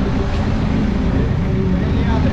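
A BMW 120d race car's four-cylinder N47 turbodiesel idling steadily.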